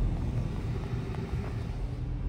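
Steady low rumble of a car's engine and tyres, heard from inside the cabin while driving, with a faint steady hum.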